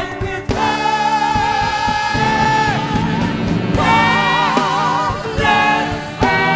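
Live soul band playing while a singer holds long notes with a wide vibrato, the voice breaking off briefly and coming back in.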